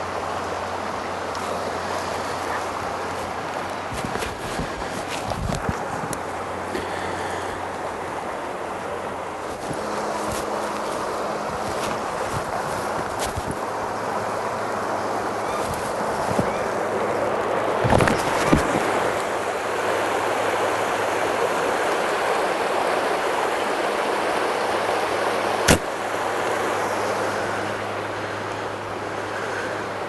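Steady rush of a creek running, with a few knocks and rustles about two-thirds of the way through and one sharp snap a few seconds before the end.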